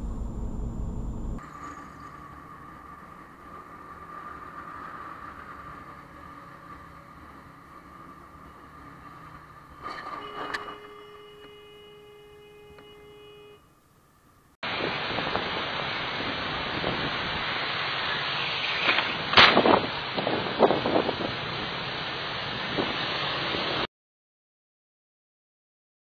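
Road and traffic noise from dashcam clips. A sharp knock comes about ten seconds in, followed by a few seconds of steady ringing tone. From about halfway there is loud steady road and wind noise, broken by several sharp knocks, the loudest about two thirds of the way through.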